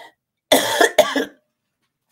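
A woman coughs twice in quick succession, two short, sudden bursts about a second apart.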